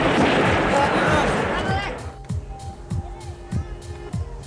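Several voices over music, loud and busy, cutting off abruptly about two seconds in. After that comes a quieter stretch of irregular low knocks with a few held steady tones.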